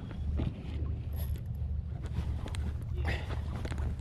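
Steady low wind rumble on the microphone over water moving around a kayak, with a few faint clicks.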